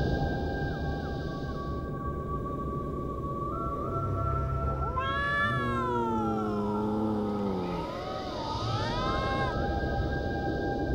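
Domestic cat meowing: one long, drawn-out meow starting about halfway through and falling in pitch, then a shorter meow near the end, over eerie music of sustained tones.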